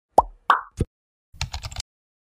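Intro sound effects: three quick plops about a third of a second apart, each dropping in pitch, then a rapid run of keyboard-like typing clicks for about half a second.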